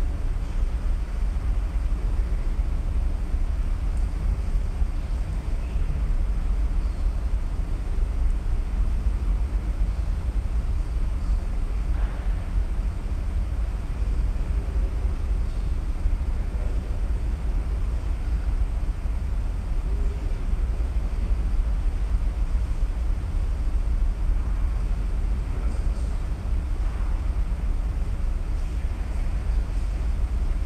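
Steady low rumble of background noise, unchanging throughout, with no distinct events.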